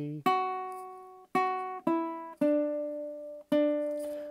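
Ukulele played as single plucked notes, a short melody of five notes, each ringing and fading before the next.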